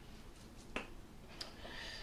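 Quiet kitchen room tone with two faint, sharp clicks less than a second apart, from a knife and citrus fruit being handled and set down on a wooden cutting board.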